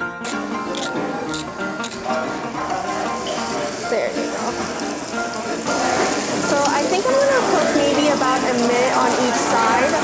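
A wagyu ribeye steak sizzling as it sears in a frying pan, starting about six seconds in, under background music.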